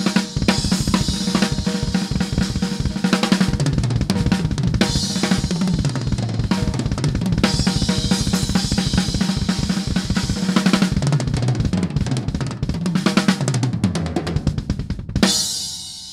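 Acoustic drum kit played as an improvised double-bass solo: rapid, continuous double bass drum strokes under snare, tom and cymbal hits, with several tom runs falling in pitch. It ends on a cymbal crash that rings and fades.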